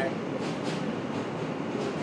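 Steady running noise of a New York City subway car, heard from inside the car, with a few faint clicks.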